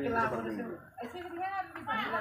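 Quieter voices talking in the background, with no clear words, briefly dropping away about a second in.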